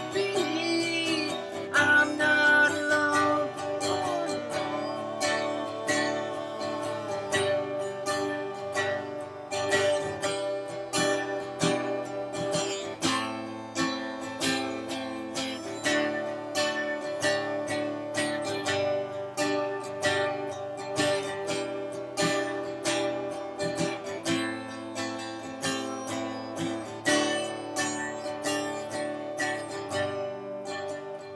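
Steel-string acoustic guitar strummed in a steady rhythm, with a man singing over it for the first few seconds. The rest is an instrumental stretch in which a harmonica holds long notes over the guitar.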